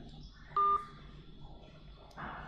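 A single short electronic beep, one steady tone about a quarter second long, about half a second in.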